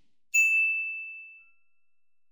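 A single high, bell-like ding, struck once about a third of a second in and ringing out as one clear tone that fades away over about a second.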